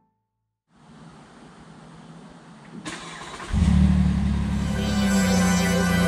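A vehicle engine comes in about three and a half seconds in, after a rising hiss, and runs steadily, with music over it.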